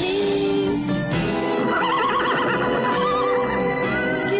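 Orchestral cartoon theme music with a horse whinnying over it, a trembling neigh starting a little under two seconds in and lasting about a second and a half.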